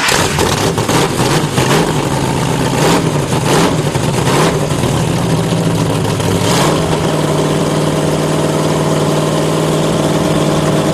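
Racing boat's inboard engine with open chrome headers just fired up, running unevenly with its pitch rising and falling in repeated surges, then settling into a steady idle about two-thirds of the way in.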